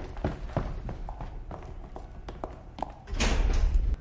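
Footsteps on a hard floor, a run of short sharp steps about three a second, then a louder rush of noise with a low rumble for most of the last second.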